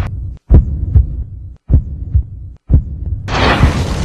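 Channel-ident sound design: low, heartbeat-like thumps about every half second, cut by brief dead silences. A loud rising whoosh swells up a little past three seconds in.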